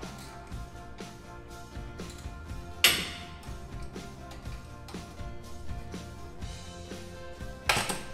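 Background music, with a sharp metallic clank about three seconds in and another near the end from hand tools and brake parts being handled at a truck's front brake.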